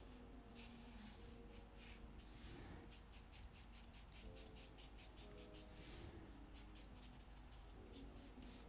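Black marker pen tip drawing on paper: faint, short scratchy strokes, repeated irregularly.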